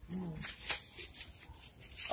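Rustling and scuffing handling noise as a phone is moved against fleecy clothing: irregular scratchy brushes after a short spoken 'yeah'.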